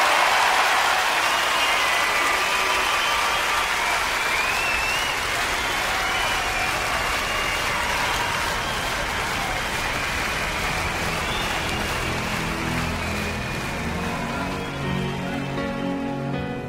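Recorded concert audience applauding, with whistles over the clapping. Soft music comes in under it near the end.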